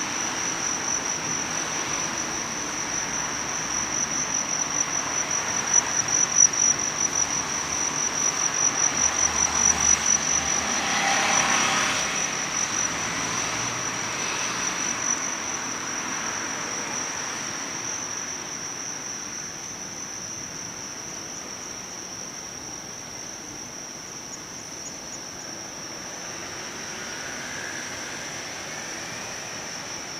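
Night insects, crickets, chirping in a steady, high, continuous trill. Partway through, street traffic noise swells and fades beneath it.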